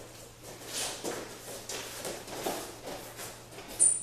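Two wrestlers' shoes shuffling and stepping on a wrestling mat, with soft irregular scuffs as they grip and move each other. A short, sharp high squeak comes just before the end.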